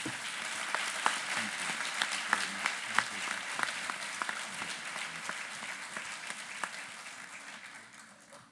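Audience applauding, with sharp individual claps standing out in the first few seconds; the applause then thins and fades away toward the end.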